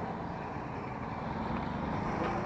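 Electric kick scooter in use: a steady low rumble with a faint hum.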